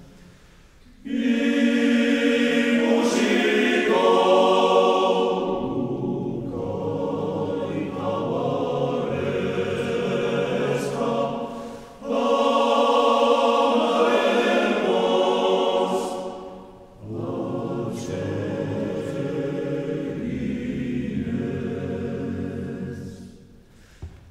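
Men's choir singing in harmony a cappella, in three long phrases with brief pauses for breath between them.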